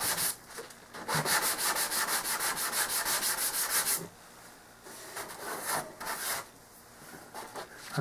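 Hand sanding with a drywall sanding pad rubbed quickly back and forth over the latex-painted fuselage of an RC model airplane, about six strokes a second. After a brief pause the strokes start about a second in and stop about four seconds in, followed by a few lighter strokes. The latex is only just heat-dried and sands off as a powder.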